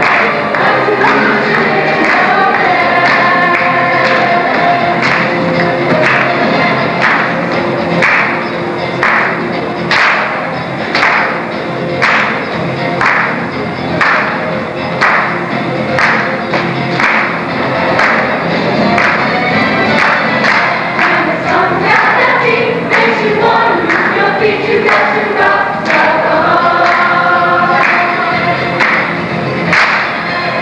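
A stage musical's rock number: a large cast sings together over loud band music with a steady, strongly marked beat. Through the middle the beat stands out most, and the group singing is clearest near the start and end.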